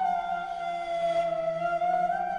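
Slow flute music: one long held note that sinks gradually in pitch, then rises again near the end.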